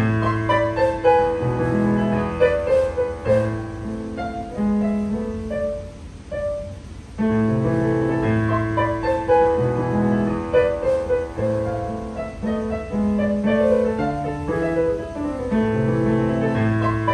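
Solo piano piece played on a digital piano: a melody over sustained low bass notes, which drops briefly quieter about six seconds in and picks up again about a second later.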